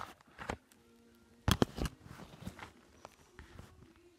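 Handling noise from the camera being moved and set down on a fabric couch: a few short thumps and rustles, the loudest two close together about a second and a half in.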